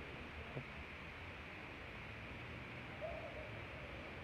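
Faint, steady outdoor background noise, with a brief faint wavering call about three seconds in.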